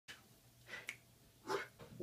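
Low room tone with a few faint sounds from the person about to speak: a soft click a little under a second in, and a short breath-like rush about a second and a half in.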